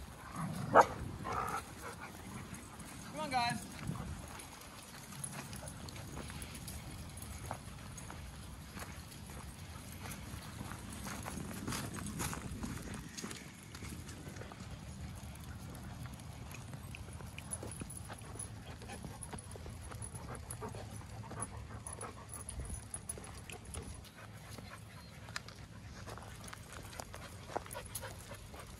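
A pack of dogs on the move, their paws and the walkers' footsteps pattering on the ground, with a short wavering dog call about three seconds in.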